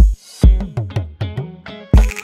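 Background music with a drum beat and short plucked notes.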